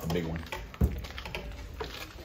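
A man's voice briefly, then a single thump just under a second in, followed by light, rapid clicking taps.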